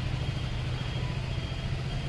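Steady low mechanical rumble with a faint high whine above it, like a motor running nearby.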